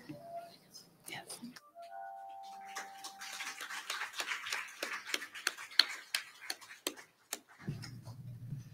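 A small congregation claps for about five seconds. Just before, about two seconds in, a brief bell-like chime rings several tones at once.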